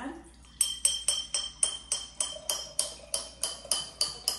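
A glass jar being tapped over and over with a chopstick, about four taps a second, each tap ringing with a high bell-like tone. Water is being poured into it to bring its pitch down, tuning it as a water-xylophone note toward E.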